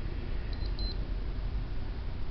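Manhattan digital power supply tester beeping twice, quick and high-pitched, about half a second in, as the PC power supply is switched on. The double beep at power-up is a good sign that the supply has started correctly.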